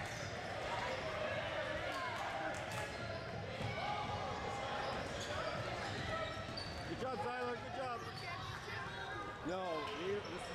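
A basketball bouncing on a hardwood gym floor, over a steady background chatter of players' and spectators' voices.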